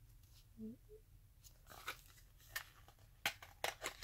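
Faint rustling and sharp clicks of a small cardboard product carton being opened and handled, the clicks coming thicker in the second half.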